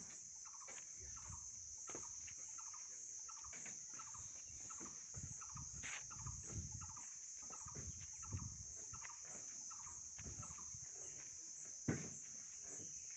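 Quiet outdoor ambience: a steady high insect drone, short repeated bird calls, and the soft thuds of footsteps on dirt.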